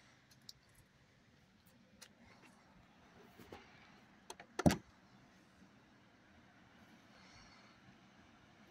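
Clicks from a 2024 Ram TRX pickup's driver's door handle and latch as the door is opened, then one loud sharp thump about four and a half seconds in.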